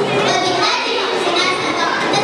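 Many children's voices talking and calling over one another in a large hall.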